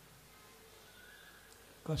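A pause in a man's lecture: low, steady room tone with a faint thin high tone, then his voice resumes just before the end.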